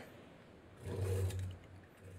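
A brief low rumble lasting about half a second, about a second in, over quiet room tone.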